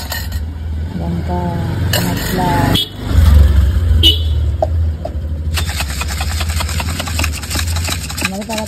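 Ghoti gorom (chanachur snack mix) being shaken in two plastic cups clamped together, a rapid dry rattle starting about five and a half seconds in. Before it, a low traffic rumble, loudest about three seconds in, with brief voices.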